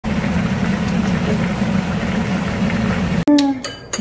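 Braised chicken sauce bubbling steadily in a pan over the heat. It stops abruptly near the end, followed by a brief vocal hum and a few clicks.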